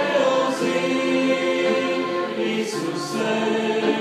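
A church congregation singing a worship song together, slow and with long held notes.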